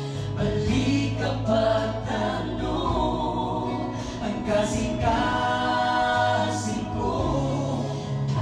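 A mixed vocal group, several women and a man, singing a gospel song together in harmony into microphones, over sustained keyboard chords.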